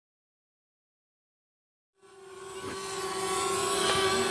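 Silence, then about halfway in a small DJI quadcopter drone's propellers spin up: a steady whine with many overtones that grows louder.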